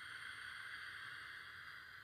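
A woman's slow, deep in-breath on a guided breathing cue: a steady, soft hiss of air drawn in, tapering off slightly near the end.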